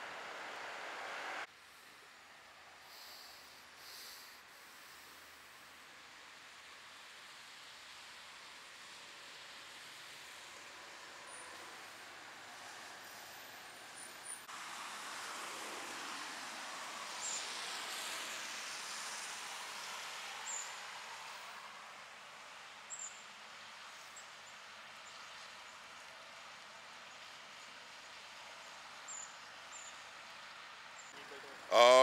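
Faint roadside traffic noise: a vehicle passes, swelling about fifteen seconds in and fading away by about twenty-two, over a steady outdoor hiss with a few faint clicks.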